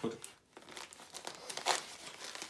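Clear plastic bag of shellac flakes crinkling as it is handled and folded, with irregular crackles and a sharper crackle near the end.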